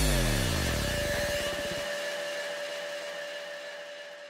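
Electronic transition sound effect on a title card: a deep sweep falling in pitch that slowly dies away. Its low end drops out about two seconds in, leaving a faint steady ringing tone in the fading tail.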